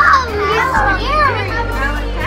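Several children's voices exclaiming and chattering, with rising-and-falling calls, over background music with a steady low bass line.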